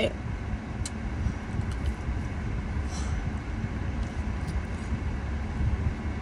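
Steady low rumble of a car's cabin with a faint even hiss, and a small click about a second in.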